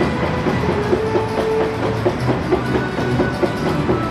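Wooden roller coaster train on test runs, rolling along its track with a steady rumble and a regular clacking, about four clacks a second.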